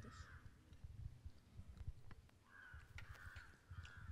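Near silence, with faint bird calls at the start and again during the second half, over a low rumble.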